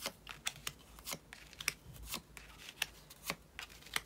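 Tarot-style picture cards being drawn from a deck and laid face up on a cloth, making a dozen or so light, irregular card snaps and flicks.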